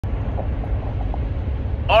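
Road and engine noise inside a moving car's cabin: a steady low rumble. A man's voice starts just at the end.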